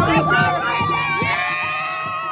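A crowd of sports fans shouting and cheering in celebration. One long, high-pitched held note rings out over the shouting from the start and carries on unbroken.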